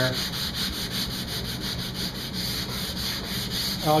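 Hand-sanding a walnut tabletop with 220-grit paper on a sanding block, in quick back-and-forth strokes at about four a second. The paper is smoothing off a dried, still-rough film of CrystaLac water-based pore filler.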